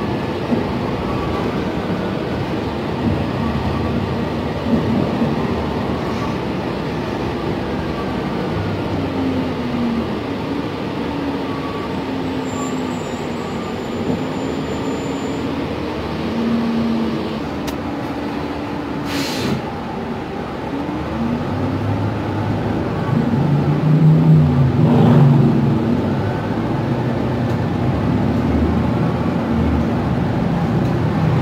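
Cabin sound of a New Flyer XN60 articulated bus on the move, with its Cummins Westport ISL G natural-gas engine running under the road noise. The engine note rises and falls several times. A short hiss comes a little past halfway, and the engine grows louder about three-quarters of the way through.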